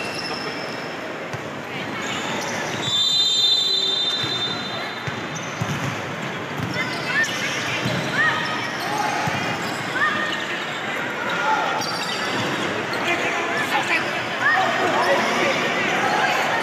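Indoor volleyball rally in a large, echoing sports hall: the ball struck and hitting the floor over and over, shoes squeaking on the court, and players shouting. A shrill whistle sounds for about a second, about three seconds in.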